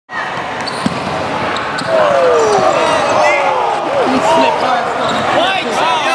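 Live basketball game sounds on an indoor court: sneakers squeaking on the floor in short rising and falling squeals and a basketball bouncing, with a sharp knock a little under a second in and voices of players and spectators around.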